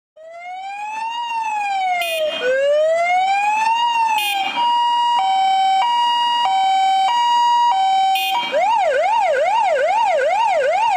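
Electronic siren of a MAN TGM 18.340 fire engine, fading in and cycling through its tones. First come two slow rising-and-falling wails, then a hi-lo two-tone switching about every half second, then, from about 8.5 s, a fast yelp sweeping up and down about twice a second. A short blip marks each change of tone.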